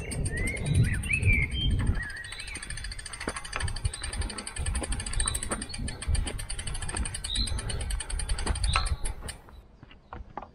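Small birds chirping in spring woodland over a low rumble on the microphone, with scattered light clicks and a faint fast high ticking; the sound drops away near the end.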